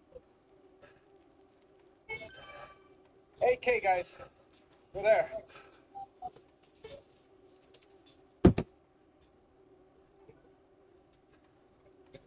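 Short snatches of a man's speech over voice chat against a steady low hum, with one sharp click about eight and a half seconds in.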